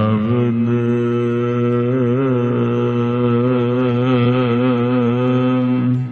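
A man's voice chanting a single long held note in Sikh scripture recitation, sustained for about six seconds with the pitch wavering slightly in the middle before it falls away at the end.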